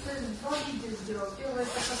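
Soft, indistinct talking with hissy consonants, quieter than the nearby speech.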